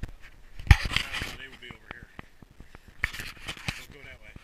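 Footsteps crunching in snow, with scraping and rubbing handling noise from a body-worn camera. Two louder noisy bursts come about a second in and near the end.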